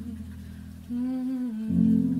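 Song with guitar accompaniment: a held chord dies away, a voice hums a short line about a second in, and a new chord is struck near the end.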